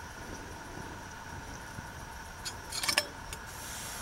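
A few light metallic clicks and clinks about two and a half to three seconds in, from the snuffer lid and fittings of a small brass alcohol burner being handled to put out its flame, over a faint steady low rumble.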